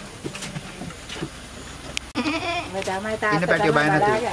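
Goat bleating loudly in a quavering, wavering voice, starting about halfway through, with two bleats running together.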